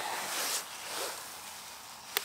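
Rustling handling noise of hands and a jacket moving around a camera on a tripod while the lens is being changed, loudest in the first half second and then fading.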